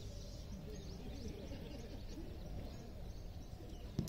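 Quiet open-air background: a steady low rumble with faint high chirps, and a brief faint knock at the very end.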